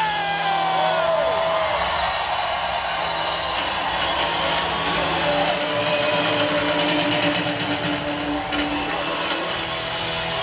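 A live rock band playing in a concert hall, ending on a long held note over the noise of the crowd.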